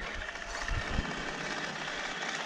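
Radio-controlled scale Bronco crawler truck driving across gravel, its newly fitted brushless motor and drivetrain giving a steady whine over the rush of the tyres on the stones. The sound starts suddenly as throttle is applied.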